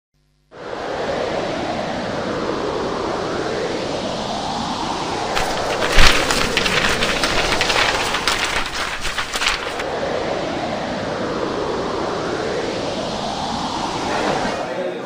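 Gusting wind, the bora, whooshing in slow swells that rise and fade. From about five to ten seconds in, papers flap and rustle in the wind, with a sharp bang about six seconds in.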